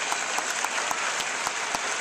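A large crowd applauding: dense, steady clapping from thousands of people.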